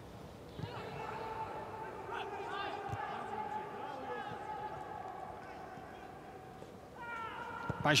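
Faint, distant shouts of players and coaches carrying across the pitch of an empty football stadium, over a low steady hum.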